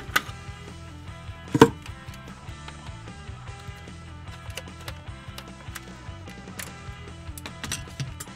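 Background music with a few sharp knocks and clicks of a screwdriver and a hard plastic toy gun being handled as its battery cover is unscrewed; the loudest knock comes about one and a half seconds in, with lighter ticks near the end.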